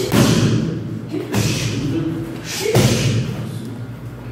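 Roundhouse kicks landing on a padded kick shield held by a Muay Thai trainer: three solid thuds about 1.4 seconds apart. A short vocal exhale from the kicker comes just before the later two.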